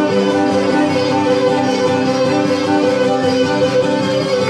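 Cretan folk dance music on bowed and plucked strings, typical of a Cretan lyra with laouto accompaniment, playing steadily without a break.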